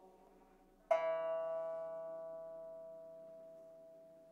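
A single note plucked on a pipa about a second in, after a brief pause, ringing out and fading slowly.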